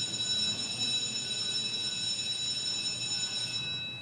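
A steady, high electronic tone held for nearly four seconds, its upper part cutting off shortly before the end, sounded as the House voting machine is unlocked for members to cast their votes.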